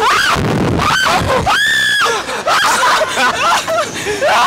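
Two riders screaming and laughing while being flung on a slingshot reverse-bungee ride, with one long, high, held scream about halfway through.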